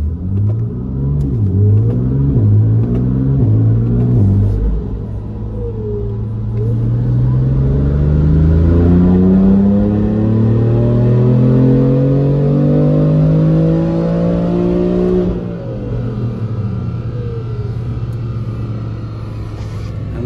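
Turbocharged BMW engine on a chassis dyno, heard from inside the cabin. It revs up and drops back several times in quick gear changes, then makes one long full-throttle pull in fifth gear with the pitch rising steadily for about nine seconds. The throttle shuts suddenly about fifteen seconds in, and the engine falls back to a lower, quieter run as the rollers slow.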